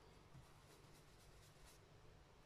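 Very faint swishing of a round foam ink-blending tool rubbed over card stock, in soft, evenly repeated strokes, barely above room tone.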